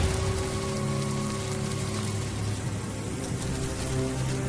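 Background music with sustained low notes over a steady, even hiss of noise.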